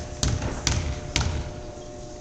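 A basketball being dribbled on a hardwood gym floor by a free-throw shooter before the shot: three sharp bounces about half a second apart in the first second and a half, then the bouncing stops.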